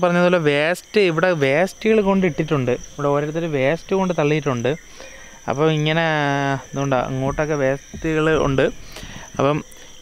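A man talking in bursts over a steady, high, unbroken chirring of crickets.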